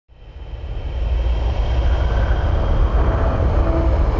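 A deep, steady rumbling whoosh, a sound effect for a dive from space toward the ground, swelling up over the first second. Sustained music notes come in over it near the end.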